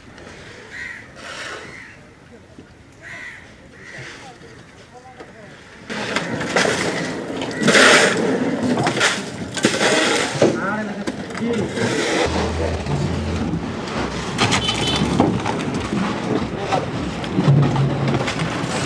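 Busy fishing-harbour bustle: background voices of workers with scraping and knocking, including a shovel working through crushed ice. It is fainter for the first few seconds and becomes louder and busier about six seconds in.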